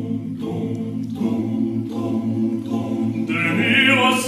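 Choir singing slow sustained chords with no instruments heard; near the end a higher voice with vibrato comes in above it and the music grows louder.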